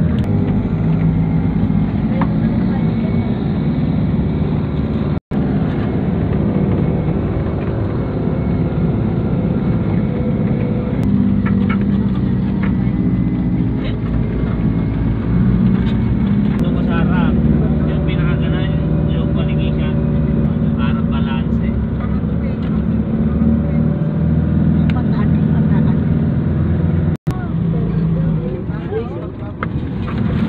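A vehicle's engine running steadily with road noise, heard from inside the moving vehicle.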